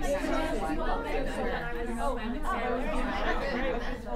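Chatter of a roomful of people talking at once, many overlapping voices with no one voice standing out.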